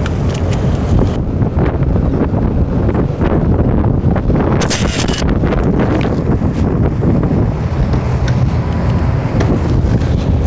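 Wind buffeting the microphone on a moving motorboat, over a steady low rumble of engine and water. There is a short burst of hiss about five seconds in.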